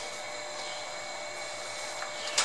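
Steady background noise: an even hiss with a few faint steady whine tones, no distinct event.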